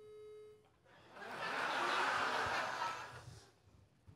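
Open telephone line: a short steady beep at the start, then about two seconds of hissing noise on the line.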